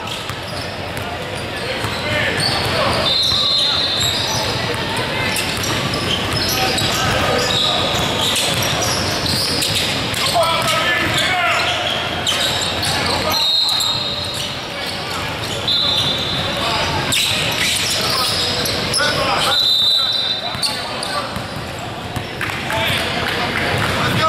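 Basketball game sounds in a large gym: a ball being dribbled and several short, high sneaker squeaks on the hardwood court, with voices in the background.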